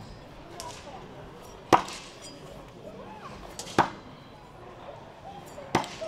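Steel throwing tomahawks thrown one after another striking a wooden log target: three sharp impacts about two seconds apart.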